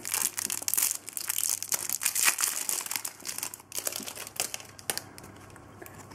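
Topps Match Attax trading-card pack wrapper being torn open and crumpled by hand: irregular crinkling and tearing that dies away about five seconds in.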